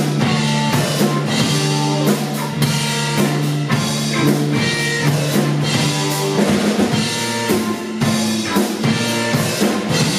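Live rock band playing, with the drum kit hitting steadily under electric guitars and bass holding chords.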